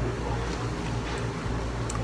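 A steady low background hum, with a faint click near the end.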